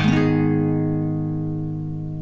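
Outro music: a guitar chord strummed once and left to ring, slowly fading.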